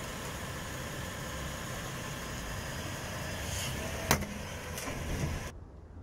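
A two-tonne SUV's engine running at idle as the car creeps forward. There is a single sharp crack about four seconds in, as the tyre rolls onto the plastic kava shaker.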